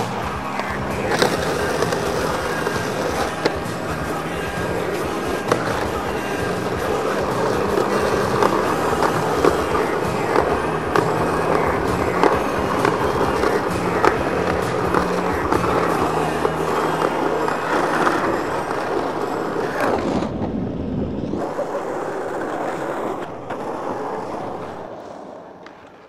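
A skateboard rolling on asphalt and grinding its metal trucks along concrete curbs in slappy grinds, with sharp clacks as the board hits and leaves the curb. Music plays underneath. The sound thins out suddenly a little after twenty seconds, then the rolling comes back.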